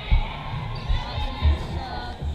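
Two dull thumps of a volleyball being struck during a rally, about a second and a half apart, over spectators' chatter in a gymnasium.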